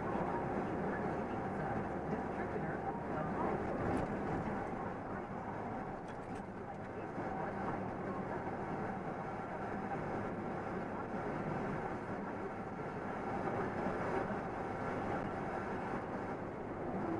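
Steady engine drone and road noise heard inside a truck cab cruising at highway speed, with a single click about four seconds in.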